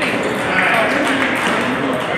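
Table tennis balls ticking on paddles and tables in a busy hall, with voices talking in the background.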